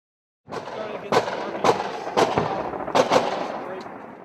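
Gunfire sound effect under a channel intro: five loud shots at uneven spacing over a rumbling, noisy bed, starting about half a second in, with the last two shots close together, then fading away.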